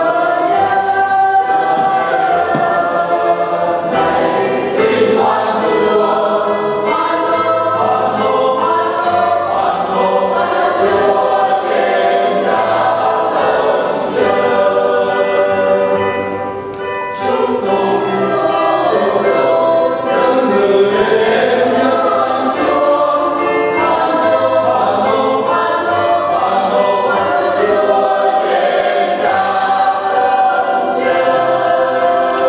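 Church choir singing a hymn in held, many-voiced phrases, with a short breath-pause about halfway through.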